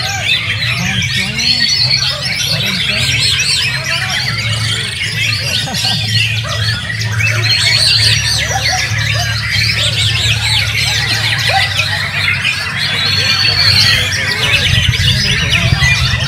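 White-rumped shamas (murai batu) singing: many birds at once, a dense run of overlapping whistles, trills and chattering phrases, over a steady low hum.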